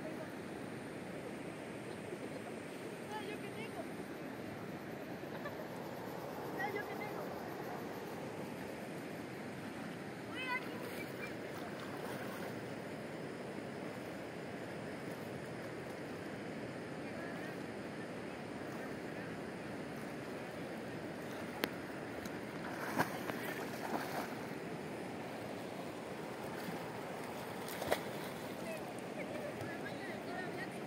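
Steady outdoor rush of river water and wind, with a few faint high chirps in the first half and several short sharp clicks in the second half.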